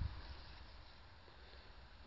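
Faint low rumble on the camera's microphone, dying away in the first half second, then a quiet outdoor background.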